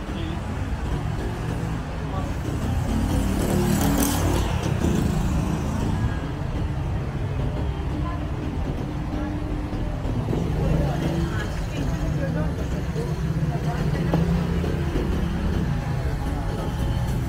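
Urban street traffic: cars and scooters passing on the road alongside, a steady engine and tyre rumble with a brief louder hiss about four seconds in, and pedestrians talking.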